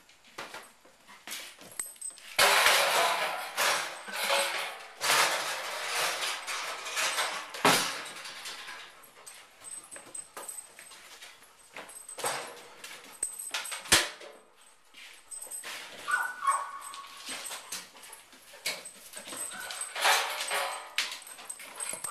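A dog moving about a workshop, with scuffling and rattling noise in several bursts, two sharp knocks, one about eight seconds in and one about fourteen, and a brief whine a little past the middle.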